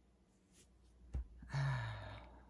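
A woman's breathy sigh with a low voiced tone that drops in pitch, coming about a second and a half in. It is preceded by a short, sharp knock.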